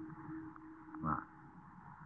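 Pause in an old recording of a talk: steady low hum and hiss, with one brief throaty voice sound about a second in.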